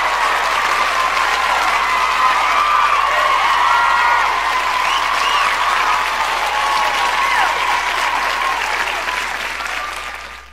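A crowd applauding and cheering, steady and loud, then fading out near the end.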